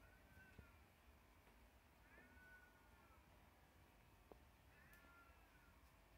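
Three faint animal calls, each under a second long and rising then falling in pitch, over quiet room tone.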